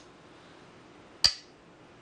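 A Go stone set down on the wooden board with a single sharp click about a second in: a move being played.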